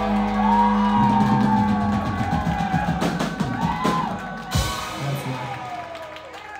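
Live rock band of electric guitars, bass and drums holding out a closing chord with drum fills and cymbal crashes, the music dying away near the end as the song finishes.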